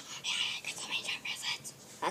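A child whispering: a string of short, breathy bursts with no voiced words, fading out about a second and a half in.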